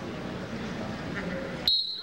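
Low murmur of a gym crowd, then about a second and a half in a sudden loud, steady high-pitched blast from a referee's whistle.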